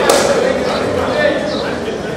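Men's voices shouting during a kabaddi raid, with one sharp smack at the very start.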